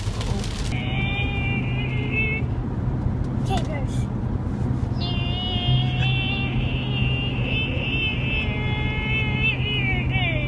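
Steady hum of a car's engine and tyres heard from inside the cabin. Over it come high, wavering tones in two stretches: briefly about a second in, then again from about halfway through, sliding down near the end.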